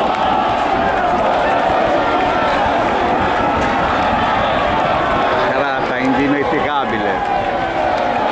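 Large crowd of football supporters shouting and chanting, a loud steady mass of voices. Near the end one nearer voice briefly stands out above the crowd.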